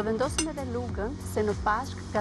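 A woman speaking over background music, with metal cutlery clinking briefly as it is handled and set on the table.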